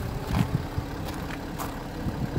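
Audi A5 3.0 TDI V6 diesel engine idling, a steady low rumble.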